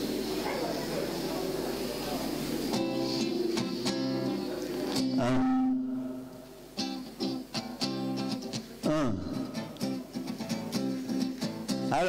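Crowd chatter in a hall. About three seconds in, an acoustic guitar starts strumming chords, rings on one held chord, stops briefly, then goes back to rhythmic strumming.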